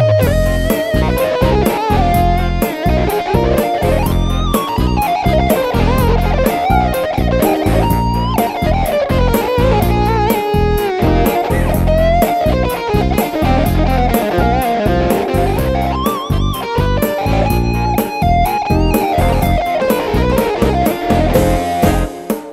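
Instrumental arrangement played on an arranger keyboard: a lead melody in an electric-guitar-like voice with sliding pitch bends, over a steady beat of drums and bass.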